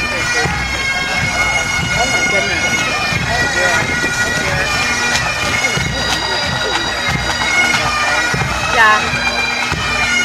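Massed Highland pipe bands playing bagpipes and drums as they march: a steady drone under the chanter melody, with drumbeats throughout.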